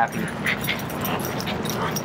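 A small dog rolling and wriggling about on a blanket-covered bed, giving a few faint whimpers, over a steady hiss of rain on the yurt's canvas roof.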